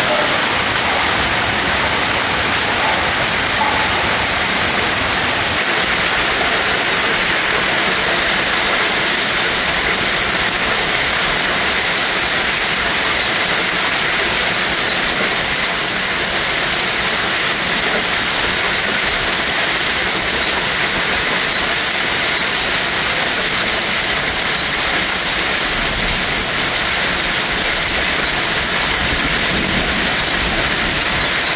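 Torrential rain mixed with hail pouring down, a loud, steady hiss that does not let up.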